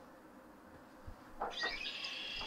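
Red-winged blackbird song played back through a tablet's speaker, beginning about one and a half seconds in.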